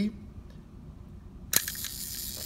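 A sharp click about one and a half seconds in as the button releases the door of a silver-plated automaton match safe, then the steady high whirr of its small motor running. The motor runs but the scene's figures do not move with it, a sign the mechanism needs adjustment.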